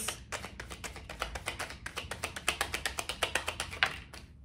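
A deck of tarot cards being overhand-shuffled by hand: a quick, even run of soft card slaps that stops just before the end.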